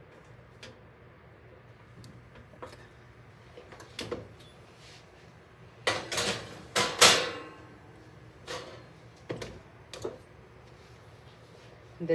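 Kitchen handling noises: scattered light clicks and knocks, then a louder clatter and scrape about six to seven seconds in as the metal mesh basket is moved off the stovetop.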